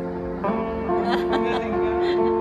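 A sape, the Sarawak plucked lute, playing a slow melody of ringing, sustained notes, with a new note plucked about every half second.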